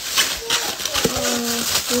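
Aluminium foil crinkling as a foil-wrapped takeout portion in a foam clamshell box is opened and handled, with a sharp click about a second in.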